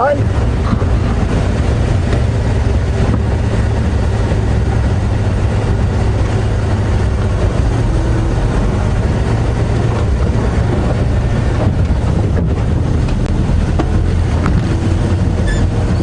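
Open 4x4 safari game-viewing vehicle driving along a sandy dirt track: a steady, unbroken low engine drone with road noise.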